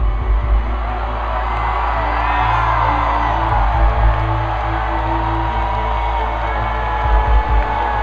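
A sustained ambient keyboard drone from the stage PA, with a stadium crowd cheering and whooping over it and a few brief low thumps.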